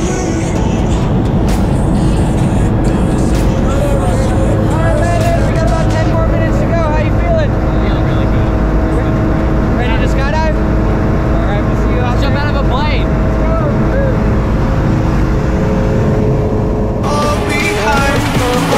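Steady drone of a jump plane's engine and propeller heard inside the cabin during the climb, with voices talking over it.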